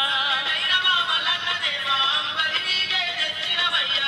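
Music with a sung melody, continuing without a break.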